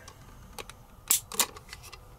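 Stainless Smith & Wesson Model 64 revolver's single action being worked dry with a trigger pull gauge: a few faint clicks, then two sharp metallic clicks a little over a second in as the hammer is cocked and dropped, and a faint click near the end.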